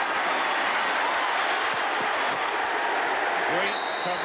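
Stadium crowd noise, a loud steady roar from the stands during a kickoff return, with a commentator's voice coming back in near the end.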